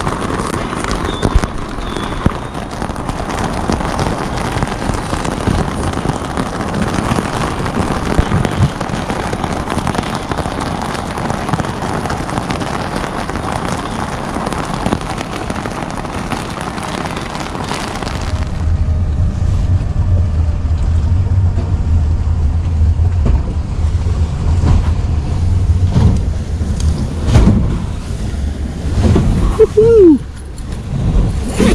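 Strong wind with rain hissing against a small boat's fabric canopy at night, rough enough that the boat drags anchor. About two-thirds of the way through the hiss drops away and a deep, steady rumble takes over.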